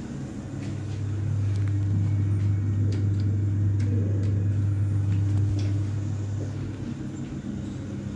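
Low, steady hum of a thyssenkrupp passenger lift's machinery heard from inside the car. It swells in over the first second or so, holds through the middle and fades near the end, with a few light clicks as the doors close and a button is pressed.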